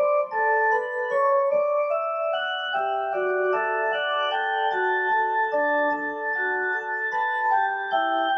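Electronic keyboard played solo: a melody over chords, each note held steadily before the next.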